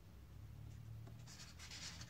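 Faint rustling of a picture book's paper pages under the reader's hands, starting about halfway in, over a low steady room hum.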